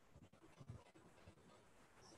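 Near silence on the call's audio, with a few faint soft ticks.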